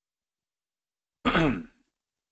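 A person clearing their throat once, a short sound of about half a second a little past a second in.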